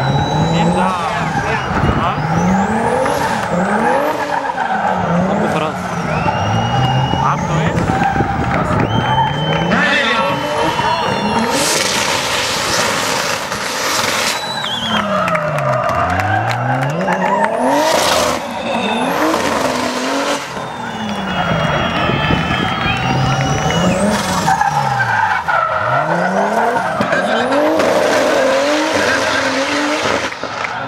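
BMW E36 drift car's engine revving up and down over and over as it slides through the course, with tyres squealing and skidding; the loudest tyre screech comes about twelve seconds in, and another sharp one at about eighteen seconds.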